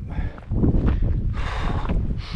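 Wind buffeting the microphone of a handheld camera as a low rumble, with a breath out near the end.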